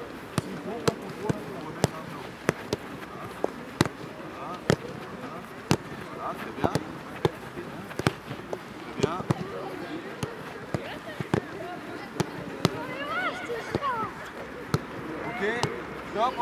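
Footballs being kicked back and forth on artificial turf in a passing drill: sharp, irregular thuds, one or two a second, from several balls at once. Children's voices call out in the background, one more clearly near the end.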